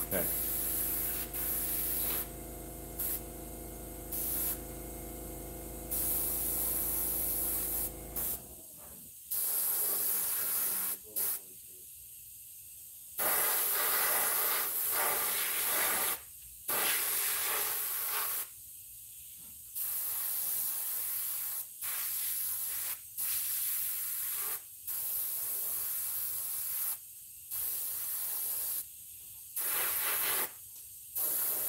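Airbrush spraying alcohol-based ink onto a latex mask: a hiss that starts and stops over and over in bursts of one to a few seconds as the trigger is worked. A steady low hum runs under the first eight seconds or so, then cuts off.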